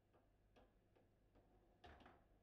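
Faint, sharp clicks of a table football ball knocking against the hard plastic players and the table, a few in quick succession, with the sharpest knock near the end.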